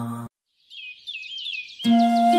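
A chanted mantra note with its drone stops abruptly, and after a brief silence a bird chirps in a quick run of short rising-and-falling high notes for about a second. Near the end, soft sustained instrumental music comes back in under the chirping.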